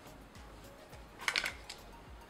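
A brush pulled through the curly synthetic fibres of a wig, heard as a quick cluster of brushing strokes a little past halfway, faint around it.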